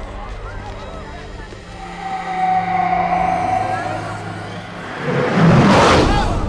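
Film soundtrack: a low droning bed with a long held tone in the middle, and a rushing, whooshing swell that rises to its loudest just before the end.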